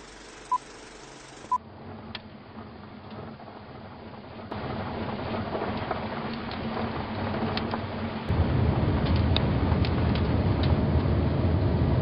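Two short high beeps about a second apart over a faint hiss, like an old film-leader countdown, then a car driving with a window open: engine and road noise that gets louder in two steps, loudest from about eight seconds in, with a few light clicks.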